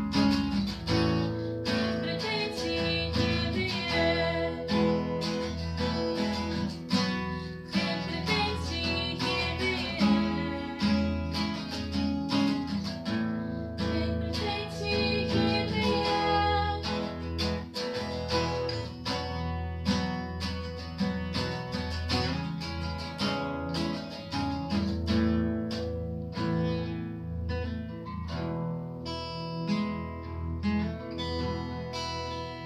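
Acoustic guitar strummed in a steady rhythm, with a woman singing over it.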